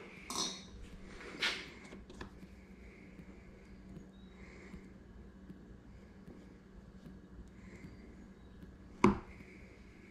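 Quiet small-room tone with a faint steady hum, broken by a couple of light taps in the first two seconds and one sharp tap about nine seconds in.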